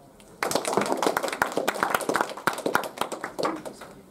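A small audience clapping in a small room. The clapping starts about half a second in and dies away near the end.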